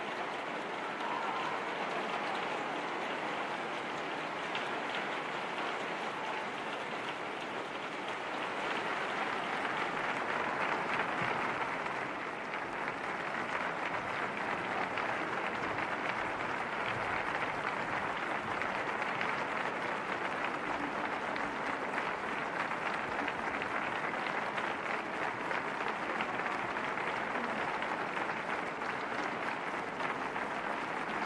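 Concert hall audience applauding, a dense steady clapping with no music.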